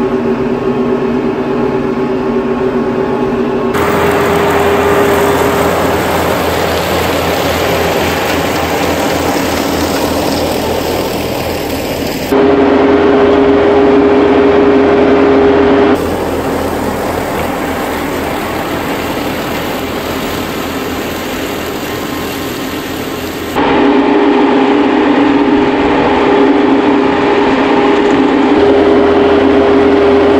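A TYM compact tractor's diesel engine running under load, pulling a RhinoAg TS10 flexwing rotary cutter through tall Johnson grass: a steady machine drone with a constant hum from the cutter. The sound jumps abruptly in level and tone several times as the shots cut between camera positions.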